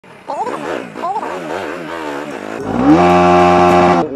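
Bajaj Pulsar NS200 single-cylinder engine running while riding, its pitch rising and falling unevenly with the throttle, then climbing about two and a half seconds in and holding a steady, louder high note.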